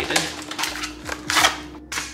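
A cardboard food box being pulled open and a plastic-film-covered tray slid out of it, making a few short rustling, scraping bursts. The loudest comes about one and a half seconds in, over a faint steady hum.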